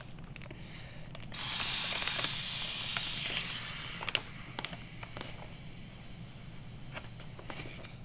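Breath blown through a hollow pen barrel into a large Ziploc bag: a loud breathy hiss starting about a second in, easing to a softer hiss for the rest, with a few light clicks of the plastic bag.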